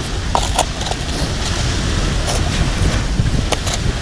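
Steady low rumble of wind on the microphone. A few light clicks and rustles come from a plastic cup, a rock and a plastic bag being handled in a hole dug in sand, several in the first second and a couple more near the end.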